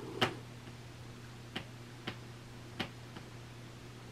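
About five light, irregular clicks, the first and loudest just after the start, over a steady low hum.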